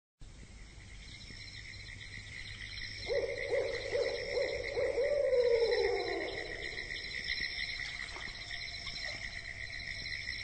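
Night-time ambience: a steady high trilling throughout, with a low hooting call from about three to six seconds in, a quick run of hoots ending in a long falling note. The sound fades in at the start.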